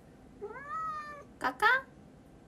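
Orange tabby Korean shorthair cat meowing: one drawn-out meow that rises in pitch, then two short meows in quick succession near the end.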